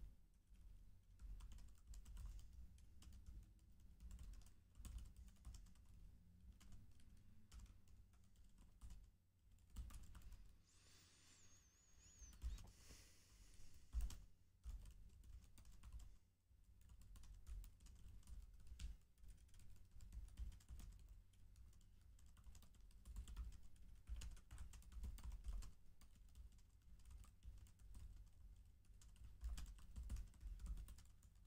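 Faint typing on a computer keyboard: quick irregular runs of keystrokes with a few short pauses.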